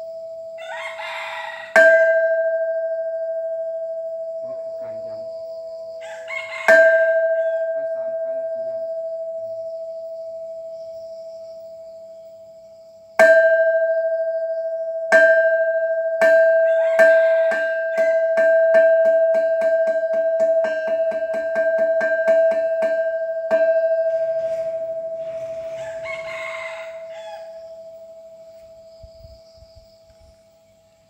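Hanging temple bell struck with a mallet: four single strokes several seconds apart, then a quickening run of rapid strokes that stops about three-quarters of the way through, the ring dying away after it. A rooster crows several times over the ringing.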